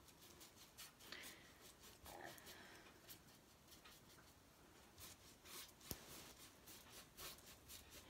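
Faint scratchy strokes of a paintbrush dabbing and scrubbing paint onto a stretched canvas, several strokes a second in an uneven rhythm, with one sharper click about six seconds in.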